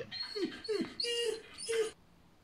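Greyhound whining at a closed door, a series of about five short high whines, several falling in pitch: she is shut out of the room where the other dog is eating and wants to get in.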